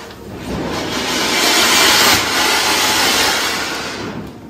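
Ground fountain firework (anar) spraying sparks with a loud rushing hiss that swells for about two seconds and fades toward the end.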